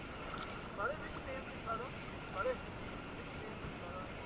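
Steady wind and water noise at the shore, with a few short, faint snatches of a voice.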